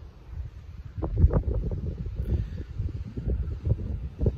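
Wind buffeting a handheld phone's microphone: an uneven low rumble in gusts that grows louder about a second in.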